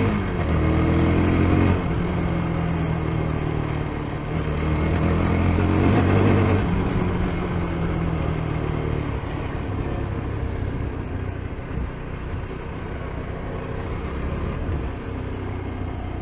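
Yezdi Scrambler's single-cylinder engine pulling from the rider's seat, its pitch climbing twice and dropping suddenly after each climb, like upshifts, about two seconds in and again at about six and a half seconds. In the second half the engine eases off and steady wind and road noise takes over.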